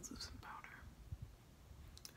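Faint, breathy speech: a trailing word half-whispered, then little but room quiet.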